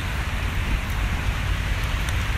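Wind blowing across a phone's microphone: a steady rushing noise with an uneven low rumble from the buffeting.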